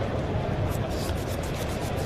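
Sleeved trading cards rubbing and flicking against each other in the hands as they are handled, a quick run of short scratchy ticks from under a second in until near the end. Under it runs the steady murmur of a busy tournament hall.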